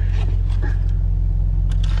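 Parked car's engine idling, a steady low hum heard from inside the cabin.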